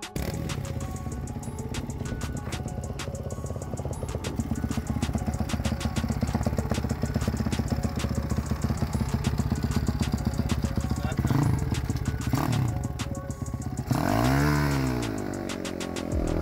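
Small race minibike engine idling with a rapid, even beat, with two short throttle blips, then revving up and back down as the bike pulls away near the end.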